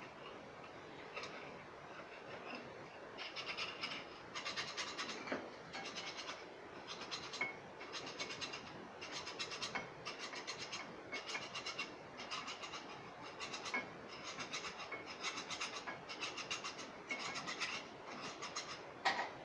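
A metal tool scraping the inside of a rusty cast end cover of a dismantled ceiling fan, in even repeated strokes about one and a half a second, starting about three seconds in.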